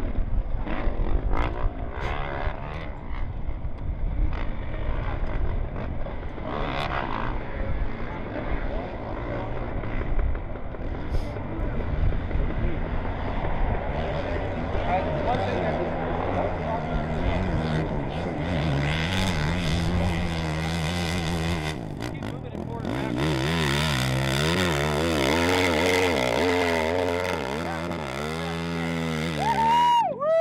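Big hillclimb motorcycle engine on nitro fuel, running hard up a steep climb, its revs rising and falling as it goes. There is a short dip a little past two-thirds of the way through, then fast, loud revving up and down near the end.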